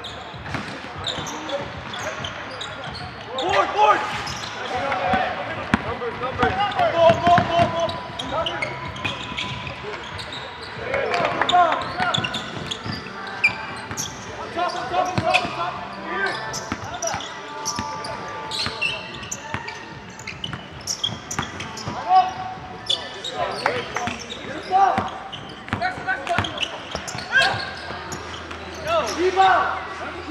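A basketball bouncing on a hardwood gym court, with players' voices calling out across the court.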